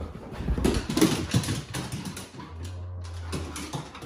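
Huskies rushing over wooden floorboards, their paws and claws clattering and scrabbling in a rapid irregular run of knocks. It is loudest in the first two seconds and comes again near the end.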